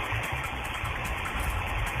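Steady rumbling, rushing noise of a building shaking during an earthquake, captured on a phone or home-video microphone that makes it sound narrow and muffled.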